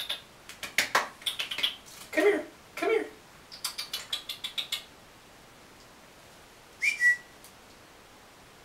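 Light clicking sounds in the first half, then a single short whistle near the end that slides up into one held high note.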